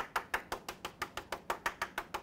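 Chalk tapping and scraping on a blackboard in a quick run of short strokes, about six a second, as small dashes are dabbed onto the board.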